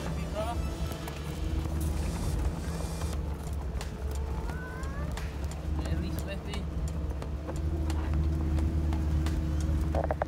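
Off-road 4x4 driving slowly over a rough, stony green lane, heard from inside the cab: a steady deep engine and drivetrain rumble with frequent short knocks and rattles from the bumpy track.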